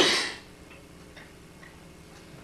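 Dry-erase marker writing on a whiteboard: a few faint, short, irregular ticks as the word is written, following the tail of a spoken word.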